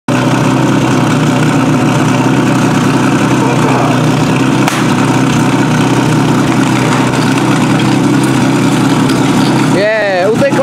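Portable firefighting pump's engine running steadily and loudly, with a single sharp click about halfway through.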